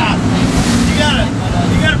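Tour boat's motors running under way, a steady low rumble mixed with wind buffeting the microphone and water rushing past the hull.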